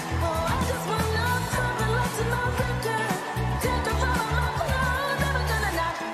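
Pop song with a lead vocal over a heavy bass line.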